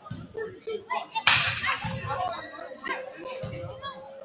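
Gym crowd chatter with a sharp crack about a second in, the loudest sound, and a few dull thuds of a basketball bounced on the hardwood floor at the free-throw line.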